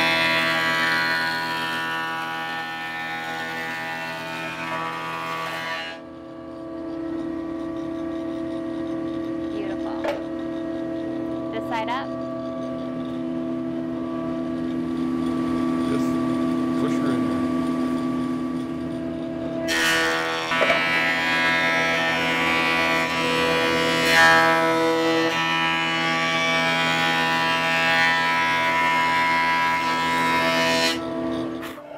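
Benchtop thickness planer running with a steady motor whine, cutting loudly as a rough board feeds through in the first six seconds and again from about twenty seconds on, surfacing it to an even thickness; in between the cutter head spins without a board.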